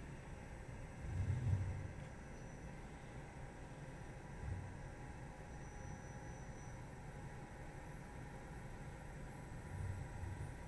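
Faint, steady room tone with a low electrical hum and background hiss, broken by a soft low murmur or thump about a second in.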